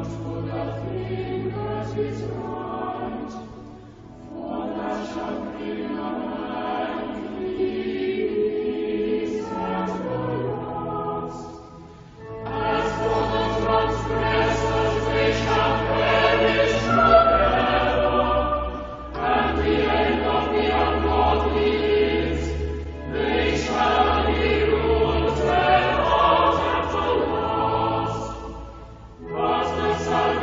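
Church choir singing in phrases over sustained low notes, with brief breaks between lines.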